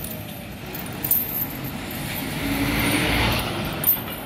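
A road vehicle, most likely a bus, passes close by. Its engine and tyre noise builds through the second half and peaks about three seconds in. Metal clinks, typical of an elephant's leg chains, come about a second in and again near the end.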